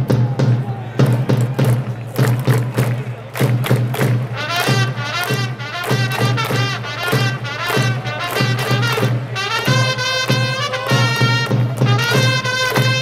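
Baseball cheering music: a steady drum beat from the start, joined about four seconds in by a brass melody that ends on long held notes.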